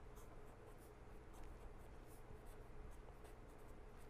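Faint scratching of a pen writing on paper, a run of short irregular strokes.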